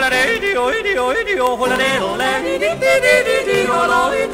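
Alpine mountain yodel (Gebirgsjodler): a voice breaking rapidly back and forth between chest and falsetto in a fast run of wide pitch leaps. The yodel refrain breaks in sharply at the start, straight after the sung verse line ends.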